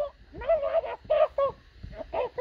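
A high-pitched voice babbling unintelligible gibberish in a string of short, quick syllables.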